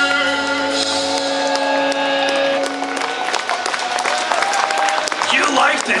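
A heavy metal band's last chord of distorted electric guitars ringing out and fading as the song ends, the bass dropping away about a second in. From about halfway, the audience cheers and applauds, with shouts.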